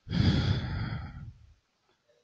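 A man's long exhale or sigh close into the microphone, a breathy rush with a low rumble of breath hitting the mic, fading out about a second and a half in.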